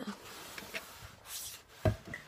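Faint rubbing and brushing of a hand moving over carpet close to the microphone, then one brief soft thump near the end.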